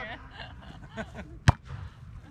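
A volleyball struck by a server's hand: one sharp smack about one and a half seconds in. Faint voices call out around it.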